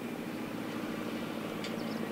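A steady engine hum, like a motor vehicle idling, running evenly throughout.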